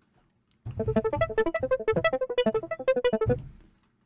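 Omnisphere software synth playing the 'Brass String EP' electric-piano patch through its arpeggiator, set to 1/16 triplets: a fast run of short notes starts about half a second in, lasts under three seconds and then dies away.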